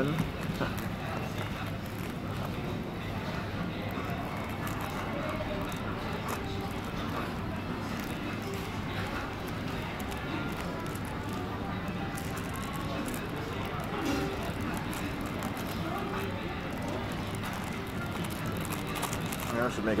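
Steady murmur of crowd chatter in a food court with music playing underneath, and the crinkle of a small plastic condiment packet being worked open by hand.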